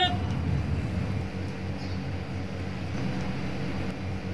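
The last syllable of a man's shouted drill command ends at the very start. It is followed by a steady, low outdoor rumble with no voices.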